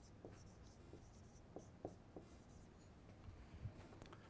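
Faint strokes of a dry-erase marker writing on a whiteboard: a handful of short, separate scratches in the first half, then quiet room tone.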